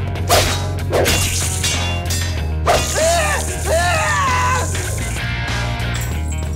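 Sword-fight sound effects over a backing music track with a steady bass: sharp swishes and hits about a third of a second in, at one second and near three seconds, then two long, wavering high cries.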